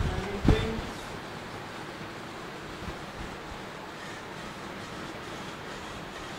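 Small robot car's DC gear motors running as it drives across a wooden floor: a steady whirring noise. A light knock about half a second in as the car is set down.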